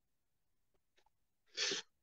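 Silence, then near the end a man's single short, sharp intake of breath.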